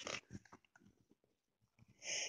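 A page of a paperback picture book being turned: a few short, soft paper rustles in the first second, then near silence.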